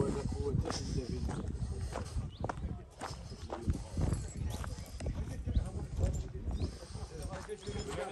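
Footsteps on gravel and broken stone, an irregular series of short scuffs and knocks, with people talking indistinctly in the background.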